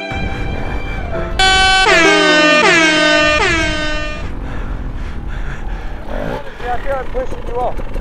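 An air-horn sound effect, very loud: a blast starting about a second and a half in, with its pitch swooping down again and again for about three seconds. Music plays under the start, and voices come in near the end.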